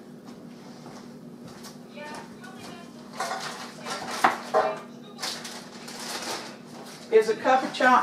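Light clinks and knocks of kitchen utensils against dishes, with patches of rustling, as ingredients are handled.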